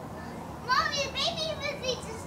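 Children's excited high-pitched squeals and shouts, a quick run of short cries starting a little under a second in, with lower voices beneath.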